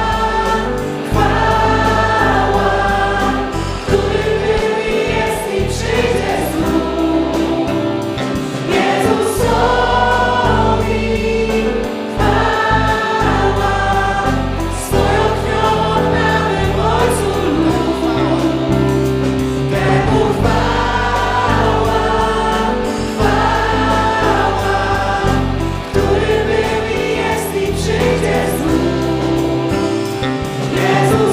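Live worship music: a group of singers leading a Polish worship song together, accompanied by keyboard and guitar over steady low bass notes.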